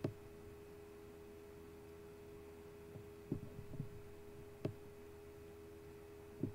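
A steady low electrical hum on one even pitch, with a few faint clicks between about three and five seconds in.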